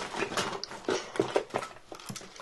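Hands rummaging inside a fabric toy basket: an irregular run of light clicks and rustles as the small toys and packaging inside are handled.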